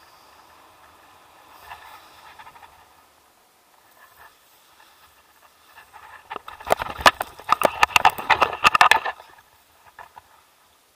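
Tandem paragliding touchdown on stony grass: a dense run of knocks and scuffs from running footsteps and rattling harness gear, starting about six and a half seconds in and lasting some two seconds.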